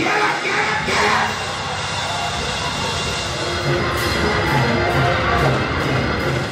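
A live church band plays an up-tempo praise-break groove with drums, bass and guitar, a steady low beat running under it, while voices in the congregation shout over the music.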